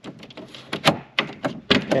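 Sliding locking latch on a boat's windshield wind-block panel being pulled up and slid over by hand: a string of sharp clicks and knocks as the latch and panel move.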